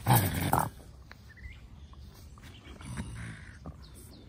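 A raccoon caught in a wire cage trap gives a short, loud growl lasting about half a second, then a softer one about three seconds in.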